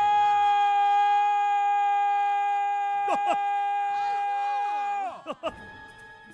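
A man's voice holding one long, high sung "No!" at a steady pitch, in an exaggerated operatic way, which cuts off about five seconds in. Swooping sounds that slide up and down join in during its last couple of seconds.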